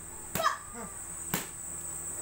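Two punches from a child's boxing gloves landing on hand-held focus mitts, each a sharp smack, about a second apart. A steady high-pitched whine runs underneath.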